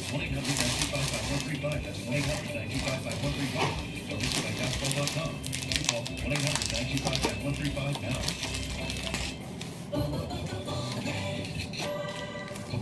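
Shredded paper rustling and crackling as hands dig through a box packed with it and lift out a plastic-wrapped bundle, in a run of many quick, irregular crackles.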